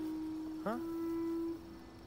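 Background music: one long held note that stops about a second and a half in.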